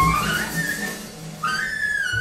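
Live jazz big-band music with a solo horn line on top. A high held note slides upward into a short note, the sound dips briefly, and a new phrase comes in near the end, over soft drums underneath.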